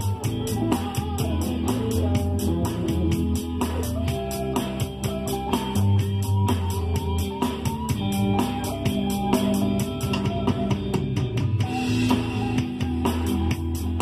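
A small band playing an instrumental passage: guitars picking a melody over low bass notes, with a steady quick beat of about six ticks a second.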